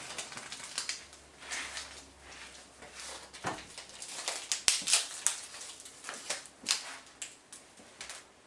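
A disposable syringe's plastic and paper wrapper being torn open and handled: an irregular run of crinkles and small clicks, loudest about five seconds in.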